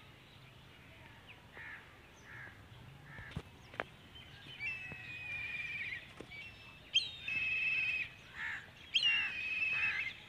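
Birds calling outdoors: a few short calls, then three drawn-out, buzzy calls of about a second each in the second half, spaced about two seconds apart. Two brief clicks come just before the first long call.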